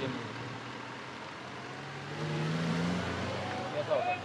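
A motor vehicle's engine running close by, its pitch climbing for about a second midway through as it accelerates.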